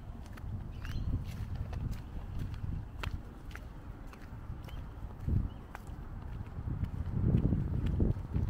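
Footsteps of a person walking on a paved footpath, irregular short taps over a low uneven rumble.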